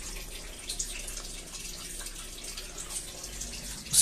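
Water running and trickling steadily into an aquaponics fish tank, a light splashing with faint drips, from the system's recirculating flow.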